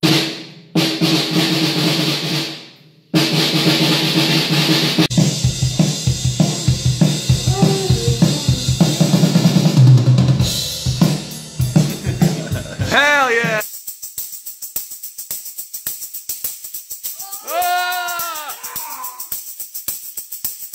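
A full drum kit with snare, kick and cymbals, recorded and played back over studio monitors as part of a sound check, with a low sustained bass line under the first seconds. About 13 seconds in, the kit drops out, leaving a quick, even light ticking, over which a voice twice slides up and back down in pitch.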